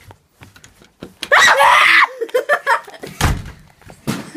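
A loud scream or yell about a second in, lasting under a second, as a prank scare is sprung. Short voice sounds follow, then a dull thump near the three-second mark.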